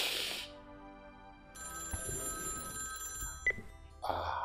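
A loud breathy sob right at the start, then a mobile phone ringtone rings for about two seconds and stops with a short click, over soft background music.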